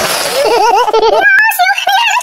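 High-pitched giggling: a run of quick, bouncing laugh syllables, after a brief hiss at the start.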